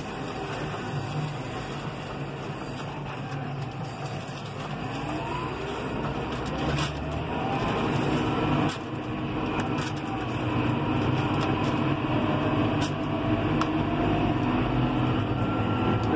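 John Deere 6150R tractor's six-cylinder diesel engine and drivetrain heard from inside the cab while accelerating hard on the road, with whines rising in pitch as road speed climbs towards 43 km/h. The steady drone gets gradually louder.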